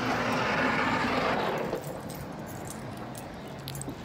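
Newspaper rustling close to the microphone for nearly two seconds, then fading to a low steady background hum.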